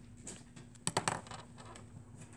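Pen strokes on paper, then two or three quick sharp clicks about a second in as the pen is set down.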